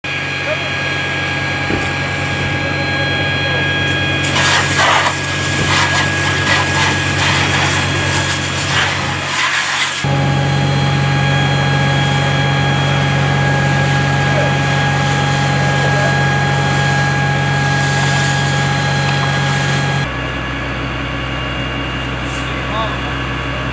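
A fire engine's engine and pump running with a steady hum. Between about four and ten seconds in there are bursts of hissing spray from a fire hose played onto a burning car.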